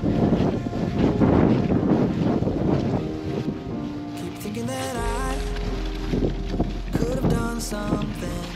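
Wind buffeting the microphone for about the first three seconds, then background music comes in: a song with held chords and a gliding melody line.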